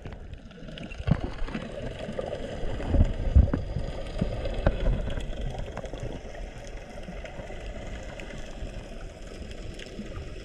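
Water sloshing and gurgling around a camera held just under the surface, heard muffled, with low thumps about a second in and again between three and five seconds in.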